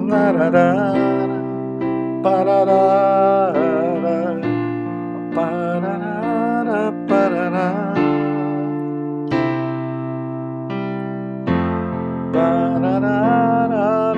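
Electronic keyboard with a piano sound playing held chords of a four-chord progression in F major (F, C, B-flat, D minor), changing about every three and a half seconds. A man sings the song's lyrics over it in a wavering voice, in several short phrases.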